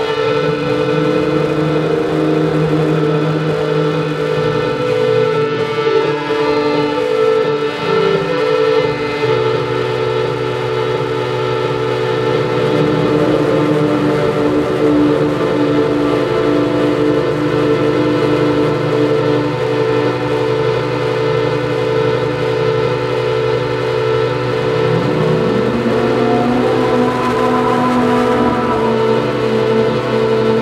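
Live electronic drone music: several sustained tones layered and held steady, shifting slowly, with a low tone sliding upward about three-quarters of the way through.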